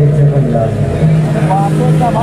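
A man's voice, speaking or singing, through a stage microphone and sound system, over a steady low drone that holds underneath.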